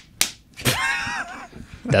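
A single sharp hand clap, the last of a quick run of claps, followed by a short high-pitched sound held at one pitch for under a second.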